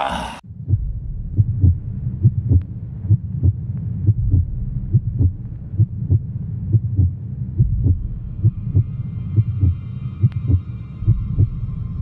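Heartbeat sound effect over a low drone: regular low thumps in pairs, like a quickened pulse, building suspense. A thin high ringing tone joins about two-thirds of the way in.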